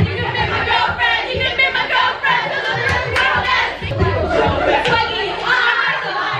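Several young women singing and shouting along together loudly into karaoke microphones, their voices overlapping.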